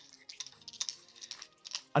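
Faint, scattered small clicks and scrapes of the hydrovac nozzle's metal parts as they are twisted together by hand.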